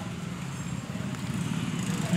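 An engine running in the background, a low steady rumble.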